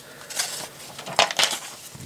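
Paper instruction booklet being handled: a few soft rustles and light clicks, the strongest a little after a second in.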